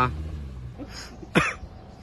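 A man gives a single short cough close to the microphone about a second and a half in, just after a faint intake of breath. An off-road SUV's engine hums faintly underneath.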